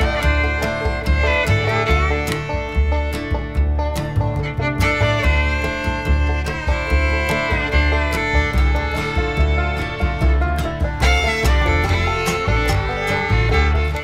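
Instrumental background music with a steady beat, played on fiddle and guitar in a country or bluegrass style.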